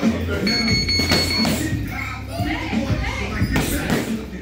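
Boxing gloves striking focus mitts: a few sharp slaps spread through the few seconds, over background music and voices.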